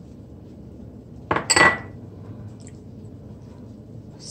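A small glass prep bowl clinking as it is handled, a short knock with a brief ring about a second and a half in, over quiet room noise.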